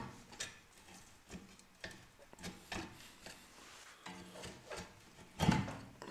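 A rusty rear brake caliper being levered off its carrier with a metal pry tool: scattered light clicks and scrapes of metal on metal, then a louder knock about five and a half seconds in as the caliper comes free.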